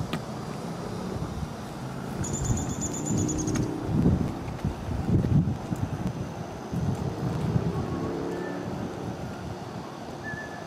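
Wind buffeting the camera microphone in uneven gusts, strongest around the middle. A brief high, fast-pulsing trill comes about two and a half seconds in, and a few faint high chirps come near the end.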